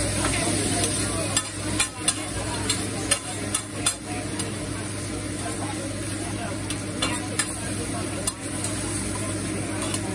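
Chicken and vegetables sizzling on a hibachi flat-top griddle while a metal spatula clicks and scrapes against the steel, with sharp taps scattered through, thickest in the first few seconds.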